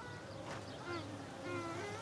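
Faint buzzing of a flying insect, its pitch gliding up and down a few times, over a low steady background hum.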